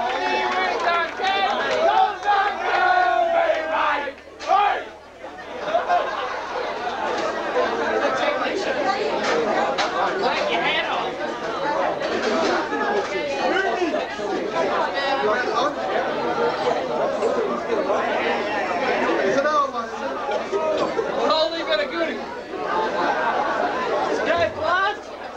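Crowd of people talking and calling out over one another, a dense babble of voices, briefly quieter about five seconds in.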